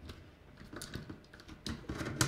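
A handful of light, irregular clicks and taps from hands handling power leads and plastic lever connectors on the opened metal chassis of a network switch.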